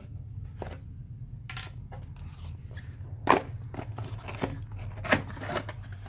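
A small blade cutting the seal on a cardboard box, then the cardboard lid being opened: scattered scrapes and a few sharp clicks, the loudest about three and five seconds in.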